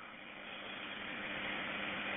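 Steady hiss of a recorded 911 telephone call with nobody speaking, slowly growing louder.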